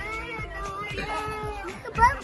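A high-pitched, sing-song voice drawing out long gliding notes over music.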